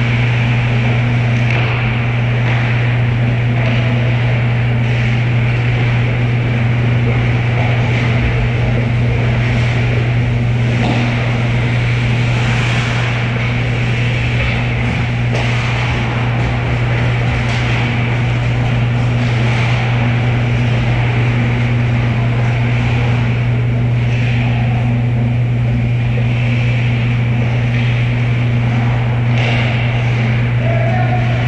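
A loud, steady low hum, with faint clacks and scrapes of ice hockey play (skates, sticks and puck on the ice) that come more often about halfway through, as play nears the net.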